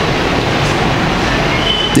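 A steady rushing noise, with no voice in it, picked up loudly by the speech microphone.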